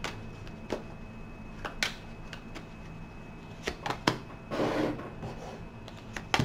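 A deck of tarot cards being shuffled by hand: a few sharp snaps and taps of the cards, with a brief rustle of shuffling about four and a half seconds in.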